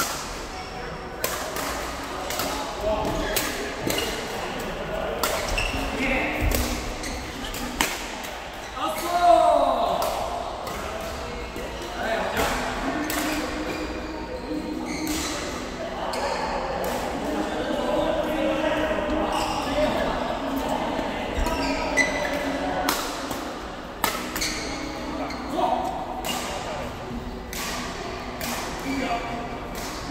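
Badminton rally: repeated sharp hits of rackets on a shuttlecock, irregularly spaced, echoing in a large indoor hall, over a background of voices.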